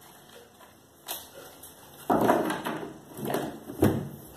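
A deck of tarot cards handled and laid out on a wooden tabletop: a tap about a second in, a longer papery rustle around the middle, and a couple of sharper taps near the end.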